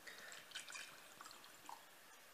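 Water poured from a plastic bottle into a glass jar, heard faintly as soft, irregular trickling and drips.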